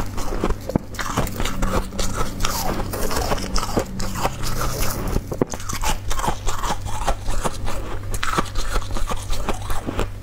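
Soft, snow-like white ice being bitten and chewed close to the microphone: continuous dense crunching and crackling.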